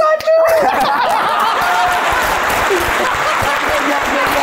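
A held sung note breaks off about half a second in, and several people burst into laughter and clapping that carries on steadily.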